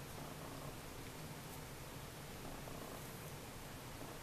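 Faint, steady low hum.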